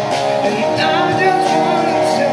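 Live rock band playing: amplified guitars over a drum kit, with a voice singing along.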